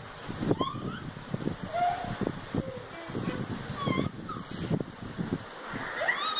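A small child's short, high squeals and squeaky vocal sounds, several brief rising and falling cries spread through, over rustling and soft bumps of bedding being handled.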